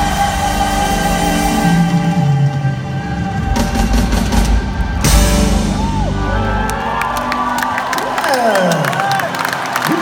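Live band playing held chords with bass and drums, with the crowd cheering and whooping. About three-quarters of the way through, the bass and drums drop away, leaving organ chords and sliding vocal whoops.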